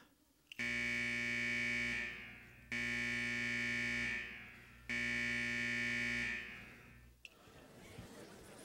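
A theatre's signal buzzer gives three long, steady electric buzzes about two seconds apart. It is the 'third signal' that warns the performance is about to begin.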